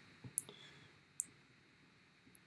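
Two short, faint clicks about a second apart, with a weaker tick just before the first, made while picking a new pen colour in annotation software.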